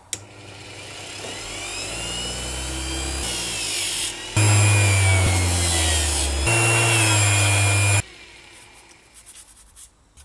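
Workzone bench grinder switched on, its electric motor whining up to speed and then running with a steady hum and whine. The sound steps louder about four seconds in and cuts off suddenly about eight seconds in.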